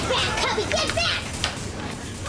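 Children shouting and yelling in high-pitched voices, loudest for the first second and a half, then quieter.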